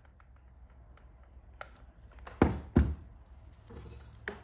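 Hands working on a wreath: faint scattered ticks and taps, then two dull thumps about a third of a second apart, a little past halfway.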